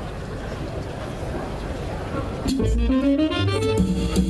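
Murmur from the audience, then about two and a half seconds in a jazz band starts playing: guitar and double bass notes over drums.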